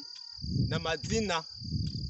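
Crickets chirring in one steady, high-pitched band, under a man's voice that starts about half a second in.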